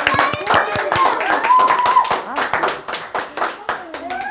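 A small group of children and adults clapping their hands, with excited voices over it; the clapping thins out in the last second.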